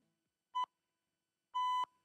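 Two electronic beeps at the same pitch, a short one about half a second in and a longer one about a second later: the start signal of the 180-second presentation timer.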